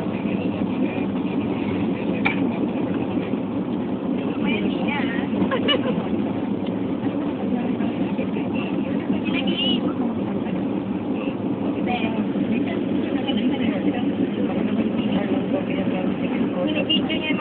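Steady low rumble of engine and road noise inside a moving car's cabin, with indistinct chatter from passengers now and then.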